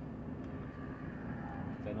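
Steady low rumble inside a Volvo truck's cab, with a man starting to speak near the end.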